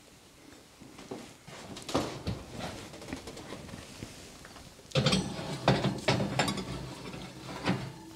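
A metal muffin pan being set onto an oven's wire rack and slid in: a few faint knocks, then a burst of metal clattering and scraping from about five seconds in.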